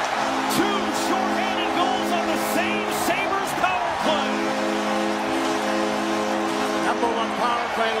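Arena crowd cheering and whistling after a home-team goal. Under it, a loud sustained chord plays over the arena's sound system and changes to a new chord about four seconds in.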